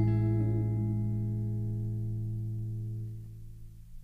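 The final chord of a song ringing out on guitars, held steady and then fading away, mostly gone after about three seconds.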